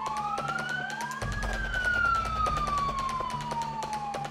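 Police vehicle siren wailing. Its pitch climbs quickly about a second in, then slides slowly down over the next three seconds.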